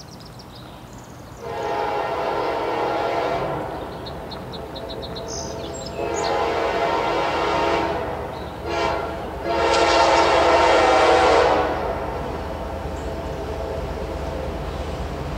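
Diesel freight locomotive air horn sounding four blasts, long, long, short, long: the grade-crossing signal. Birds chirp between the first two blasts, over the low rumble of the approaching train.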